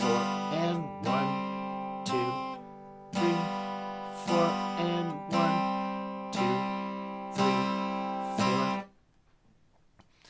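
Acoustic guitar strummed with slow, even strokes, about one a second, going from C to G7 and back to C in a beginner's chord-change exercise, each chord ringing between strokes. The last chord is stopped short about a second before the end, leaving near silence.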